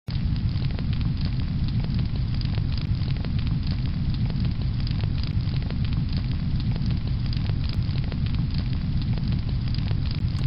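Fire crackling steadily over a low rumble, with many small sharp crackles and pops.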